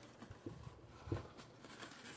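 Faint handling noises of a cardboard diecast box being opened, with a few soft knocks and rustles.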